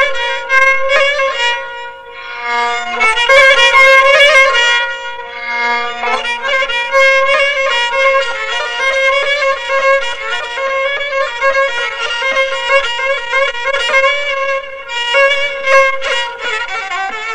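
Solo Persian kamancheh, a bowed spike fiddle, playing in the mode Bayat-e Esfahan, with long held bowed notes over a sustained low note. There is a brief lull about two seconds in before a louder, busier phrase.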